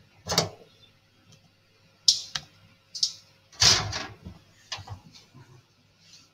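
A wine bottle being handled and opened by hand: a string of short scrapes and clicks about a second apart, with one slightly longer rasp near the middle.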